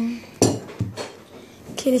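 Dishes and cutlery clattering against a table: one sharp knock about half a second in, then a few lighter clinks.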